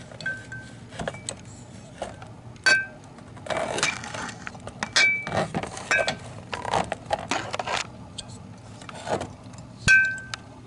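Close handling noise: a run of small knocks and light clinks, several with a short high ring, and a burst of rustling about three and a half seconds in, over a steady low hum.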